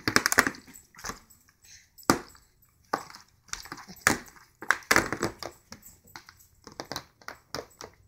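A plastic Avent sippy cup knocked against a plastic high-chair tray by a baby: a series of irregular sharp knocks, roughly one or two a second.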